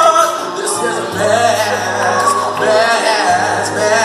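A man singing a drawn-out, wavering line with no clear words into a microphone, over an accompaniment of long held low bass notes.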